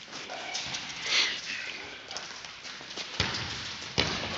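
Indoor football on a hard sports-hall floor: a run of quick footsteps and ball taps, with a sharper knock just after three seconds in.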